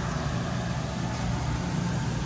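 Steady hum and hiss of open refrigerated display cases and ventilation, with a low drone underneath.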